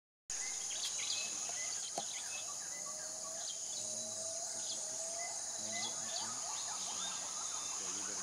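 Tropical forest ambience: a steady, high-pitched insect drone with many bird calls over it, including a series of short rising whistles.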